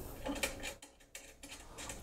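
A few faint metallic clicks as a round metal multi-pin cable connector is pushed into its socket on the weighing platform, the clearest about half a second in.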